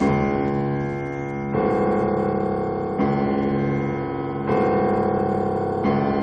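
Grand piano: five heavy, full chords struck about a second and a half apart, each held and left to ring into the next.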